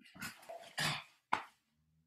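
Several short, breathy yelping vocal sounds, the third a little longer than the others.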